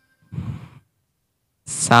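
A short breath out, a sigh-like puff, then near the end a man's voice calls out the sargam note name 'sa'.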